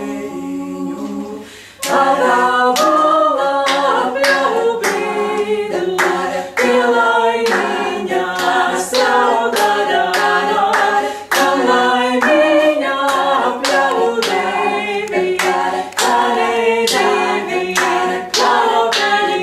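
Female a cappella vocal sextet singing a Latvian folk-song arrangement in close harmony. It starts soft, dips briefly, then about two seconds in breaks into a louder, rhythmic section with hand claps on the beat.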